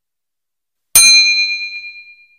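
A single bell ding sound effect about a second in, ringing out and fading over about a second: the notification-bell chime of a YouTube subscribe-button animation, sounding as the bell is clicked.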